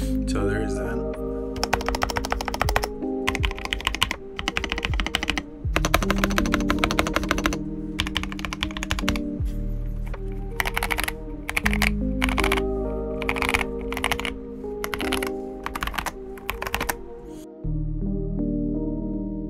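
Royal Kludge RK61 60% mechanical keyboard with Akko Jelly Purple switches and PBT keycaps being typed on in fast bursts of a second or two, with short pauses between. The typing stops near the end.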